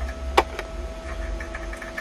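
Steady low electrical hum with a faint steady tone above it, and one small sharp click about half a second in.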